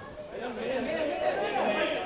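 Several men's voices calling out on the pitch at once, louder from about half a second in.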